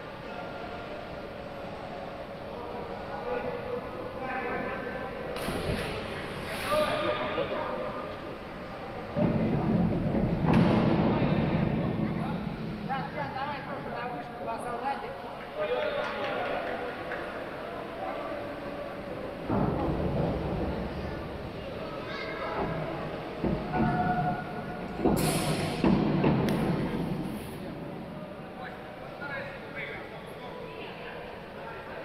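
Several divers splashing into the pool one after another, each a sudden loud entry that dies away slowly in a large tiled indoor pool hall. The biggest comes about nine seconds in, with others near six, twenty and twenty-five seconds.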